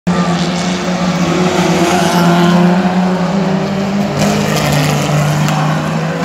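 Several touring race cars racing through a corner, their engines loud and steady, with some rising and falling in pitch as they go through the bend.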